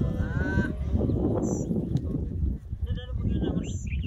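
Maasai men singing as a group: a chorus of deep, rhythmic guttural grunts from the throat, with higher voices calling over it now and then.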